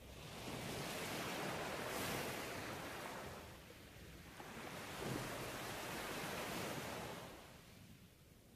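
Ocean waves washing ashore: a soft rushing noise that swells and fades twice, slowly, and dies away near the end.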